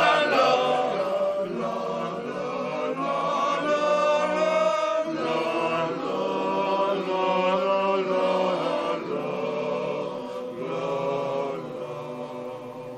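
Ochote, a small all-male vocal group, singing a cappella in close harmony on long held chords. The phrase breaks briefly about five seconds in.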